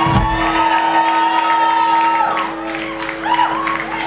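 A live rock band's closing chord struck and left ringing as held notes, with the crowd cheering and whooping as the song ends.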